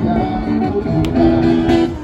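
Guitar music, plucked and strummed strings playing held notes, with a single sharp click about a second in.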